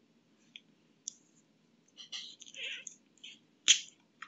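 Scattered small clicks and ticks at a computer desk, a cluster of them between two and three seconds in, and one sharper click near the end.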